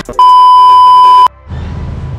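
Loud, steady test-tone beep of a TV colour-bars test card, used as an editing transition. It holds one pitch for about a second and cuts off suddenly.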